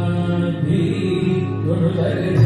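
Accompaniment music for a Bharatanatyam Pushpanjali: a voice chanting a long held note over a steady low drone.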